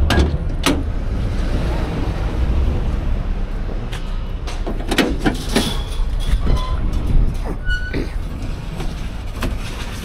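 Ford Transit cargo van doors being opened by hand: several sharp latch clicks and clunks over a steady low rumble.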